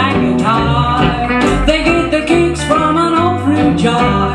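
A hillbilly band playing live with a steady beat: upright bass, acoustic rhythm guitar, lap steel guitar and electric guitar.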